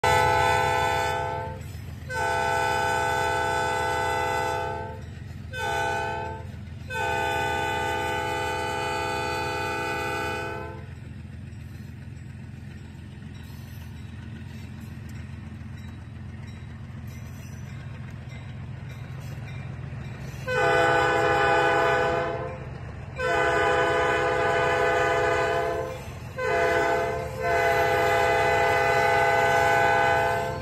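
CSX locomotive 9553's multi-chime air horn sounding the grade-crossing signal, long, long, short, long, twice, with about ten seconds of silence from the horn in between. A steady low rumble runs underneath.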